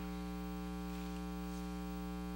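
Steady electrical mains hum, a buzzy drone with many evenly spaced overtones, picked up by the sound or recording system.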